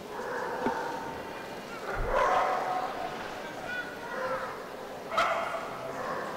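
A dog barking three times, a couple of seconds apart, over background talk.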